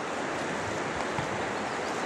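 Shallow river water running steadily, an even rushing hiss.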